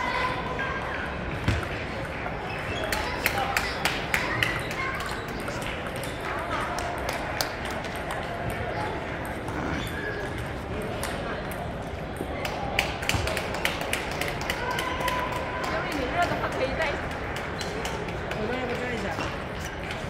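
Table tennis balls clicking off paddles and tables, in quick runs of hits from rallies at several tables, over a steady hum of crowd chatter in a large hall.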